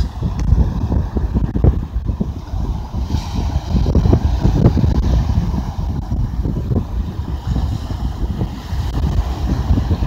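Wind buffeting a phone microphone in gusts, over the wash of choppy surf breaking on a sandy shore.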